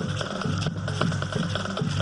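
A high school marching band playing a catchy tune on the march: sustained horn chords over a steady drum beat.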